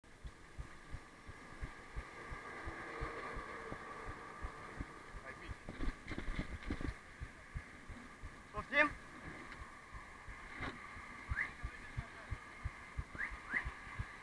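Bicycle ride noise on a handlebar or body-mounted camera: a run of dull low thumps, two or three a second, with a faint steady hum early on and a few short high chirps in the second half.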